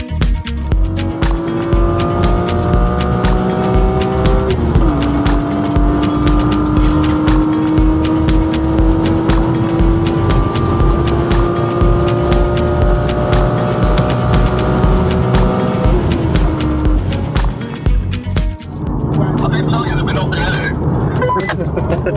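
A car engine pulling hard under full throttle, its note climbing steadily in pitch. The pitch drops sharply twice, about five seconds in and again about sixteen seconds in, as it shifts up a gear. Near the end it gives way to a rougher, noisier rush, with a music track playing throughout.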